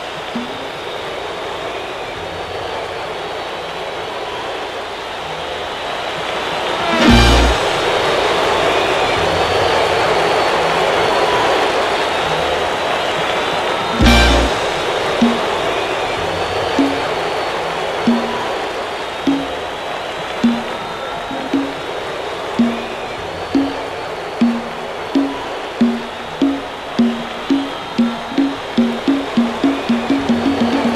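Live salsa band ending a song with a steady roar of crowd cheering underneath. Two full-band hits land about seven seconds apart. From about halfway, a single low note repeats, slowly at first and then faster and faster toward the end.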